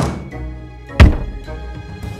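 Two thud sound effects as wooden crate lids are flung open, about a second apart, the second louder and deeper, over background music.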